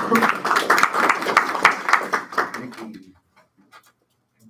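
A small group of people applauding with hand claps, dying away about three seconds in.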